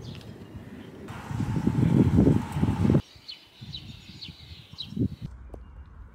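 Short outdoor clips cut together: a loud low rushing noise for about the first half, then, after a sudden cut, a small bird chirping about five short falling notes, with a low thump near the end.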